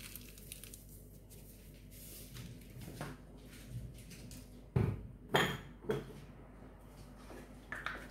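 A few light knocks and clatters of kitchen things being handled on a counter, the two loudest close together about five seconds in, over quiet room tone.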